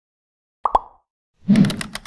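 Animated logo intro sound effects: two quick plops dropping in pitch, then, about one and a half seconds in, a short low, dense burst with a run of sharp clicks.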